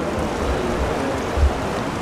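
Steady hiss of room noise in a reception hall, with two soft low thumps about half a second and a second and a half in.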